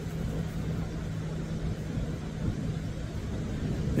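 Airplane passing overhead: a steady low engine drone that fades out near the end, over a constant wash of ocean surf.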